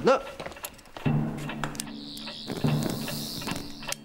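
Orchestral score with low held notes that swell in twice. From about halfway through, a high warbling, shimmering sound effect with hiss lies over them.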